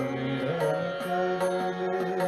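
Indian devotional singing (a bhajan) with melodic accompaniment and light percussion keeping a steady beat, about three to four strokes a second; the voice holds and bends long notes.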